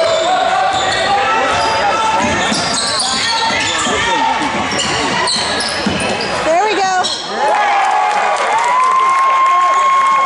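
A basketball bouncing on a hardwood gym floor under many voices from the crowd, all ringing in a large gym. Near the end a long steady high tone is held for about three seconds.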